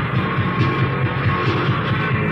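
Live post-punk rock band playing an instrumental stretch: a fast, evenly repeated bass-guitar figure over a regular drum-machine beat, with no singing.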